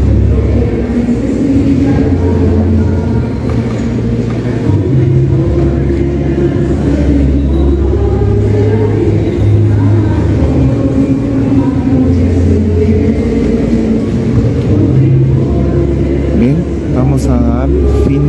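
Many people's voices in a large church, mixed with music that holds low bass notes and steps from one note to the next every second or two.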